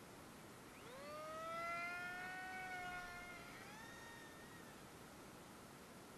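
A faint electric motor whine from a model aircraft. Its pitch rises quickly about a second in, holds steady for a couple of seconds, climbs again and fades out a little after the middle.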